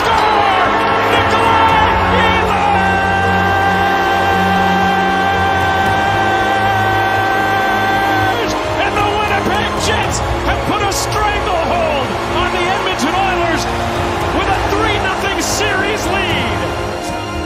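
Arena goal horn sounding one long steady blast of about six seconds, signalling a home-team goal, over music; after it stops, voices and music carry on.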